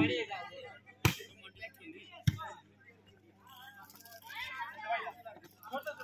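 Two sharp smacks of a volleyball being struck by hand, a little over a second apart, followed by faint voices of players and onlookers.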